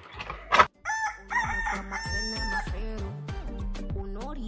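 A rooster crowing, one call of several held notes, as music begins underneath. Just before it, about half a second in, a short loud noise.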